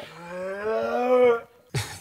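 A man's long, drawn-out groan of disgust, rising slightly in pitch over about a second and a half, in reaction to a rotten egg he has just cracked onto his fingers.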